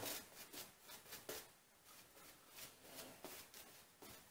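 Faint, irregular soft swishes of a shaving brush working lather over the face.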